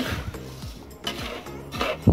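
Metal spatula scraping and stirring dry glutinous rice in a metal wok as the grains are toasted without oil, a rasping rustle of grains sliding against the pan in several strokes.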